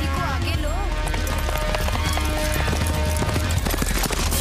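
Film soundtrack: a horse's hoofbeats at a gallop, a quick run of strikes through the second half, over steady background music.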